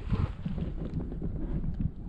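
Wind buffeting the microphone, a steady low rumble with uneven gusts.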